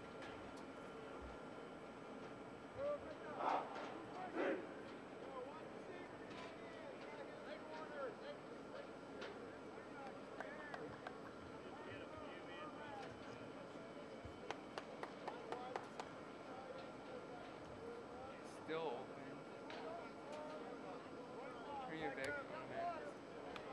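Distant, unintelligible voices of a football team at practice, calling and talking, with a few louder shouts about three to four seconds in and again near nineteen seconds, over a steady faint hum.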